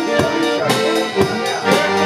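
Button concertina playing a melody over sustained reedy chords, with a steady beat of sharp strokes about twice a second.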